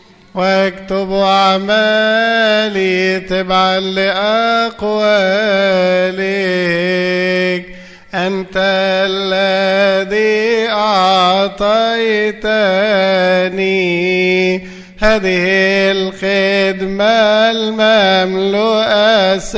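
A man's voice chanting a slow, melismatic Coptic Orthodox liturgical hymn, its long notes bending and ornamented, with short breaks for breath about eight and fifteen seconds in.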